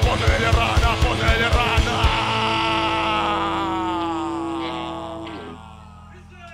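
Live punk rock band playing loudly with fast drumming, which stops about two seconds in; the final held chord then rings on and fades away over the next few seconds, the end of a song.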